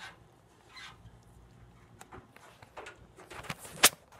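Goat hooves knocking on the metal hood of a Willys CJ-2A jeep: scattered knocks at first, then a quick run of them in the last second, the loudest just before the end.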